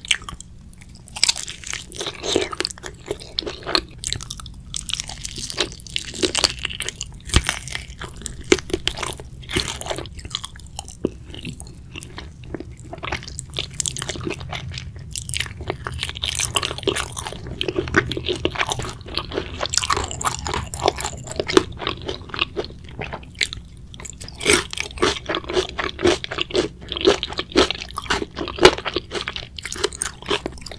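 Close-miked eating of Korean fried chicken: repeated crunches of the fried coating as it is bitten and chewed, with many sharp crackles and wet chewing.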